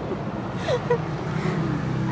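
A passing motor vehicle: a steady rush of engine and road noise that swells slightly in the middle, with a brief soft laugh under it.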